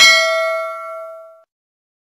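Notification-bell ding sound effect of a YouTube subscribe animation, as the bell icon is clicked: one bright ding that rings and fades out over about a second and a half.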